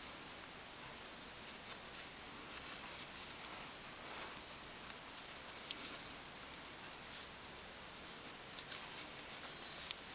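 Faint rustling of yarn and soft ticks of a metal crochet hook as stitches are worked, over a steady high-pitched hiss. A few small clicks stand out, the clearest near the end.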